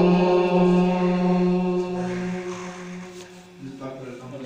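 A man's voice holding one long, steady note of a naat recitation, sung into a handheld microphone and fading out over the second half.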